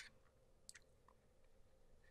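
Near silence: room tone, with a faint soft tick about two-thirds of a second in.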